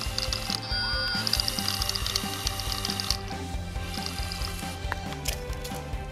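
LEGO Mindstorms EV3 robot car driving under its two large servo motors, a mechanical whir with a ratcheting gear sound, over background music.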